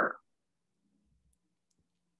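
The tail of a spoken word, then near silence with a faint low hum and a couple of faint clicks.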